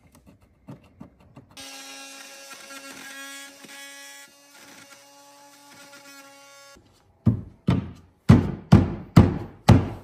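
Corded oscillating multi-tool running for about five seconds, a steady buzzing hum, as it cuts into a painted wood baseboard at a wall corner. It is followed by a run of loud, sharp knocks, about two a second.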